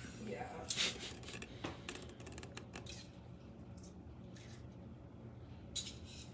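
A handheld metal garlic press being worked over a bowl: a few short scrapes and clicks in the first two seconds or so, then only faint room noise.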